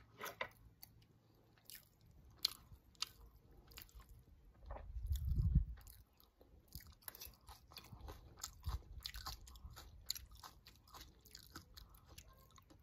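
Close-up chewing of a crunchy shredded green mango salad: wet, crisp crunches and mouth clicks at an irregular pace. A brief low rumble comes a little before the middle.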